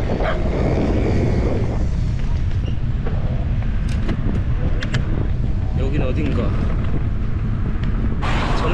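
Wind buffeting an action camera's microphone while riding a bicycle: a steady low rumble that does not rise or fall.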